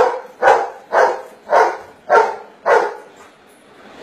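A dog barking at an even pace, about two barks a second, six barks that stop about three seconds in. The dog is counting out its answer to the sum "10 minus 3" by barking.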